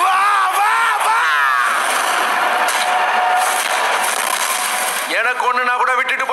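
Film trailer soundtrack: a man's loud yell at the start, then several seconds of dense, noisy sound effects, then a man begins speaking a line of dialogue near the end.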